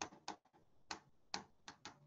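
Six short, sharp clicks at uneven intervals over two seconds, like keys or buttons being pressed.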